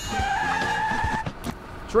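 A steady squeal at a single pitch, held for about a second and then stopping, over low street noise.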